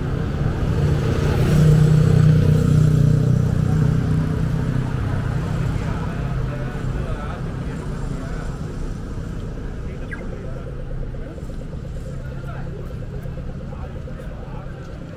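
A road vehicle's engine passing close by on a busy street, loudest about two seconds in and then slowly fading, with voices of people around.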